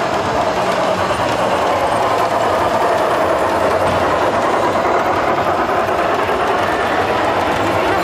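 A model Polar Express steam locomotive and passenger cars running along the layout track: a steady sound of motor and wheels on the rails.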